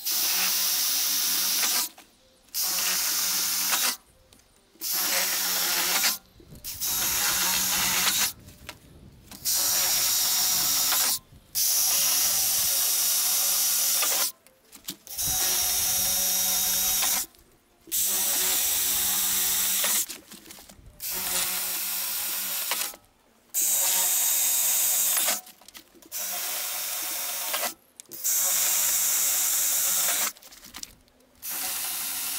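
Cordless drill boring through a stack of ten metal roofing panels to pre-drill the screw holes, in about a dozen runs of roughly two seconds each with short pauses between.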